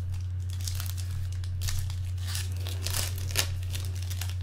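Trading-card pack wrapper crinkling and tearing as it is opened, in a run of quick crackles with one sharper crackle near the end. A steady low hum runs underneath.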